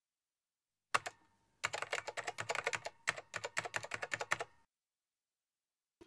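Typing on a keyboard: a single key click about a second in, then a quick run of key clicks, several a second, for about three seconds, cutting off into dead silence.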